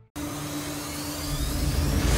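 Channel ident sound effect: a noisy whoosh with a steady low tone under it, starting after a brief break and building in loudness toward the end as it leads into the promo music.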